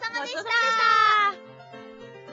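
Light keyboard jingle playing, over which a high, drawn-out, slightly falling voice-like call sounds about half a second in and ends a little past the middle, leaving the keyboard notes alone.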